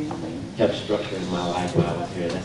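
Indistinct speech: a person's voice talking, the words not made out.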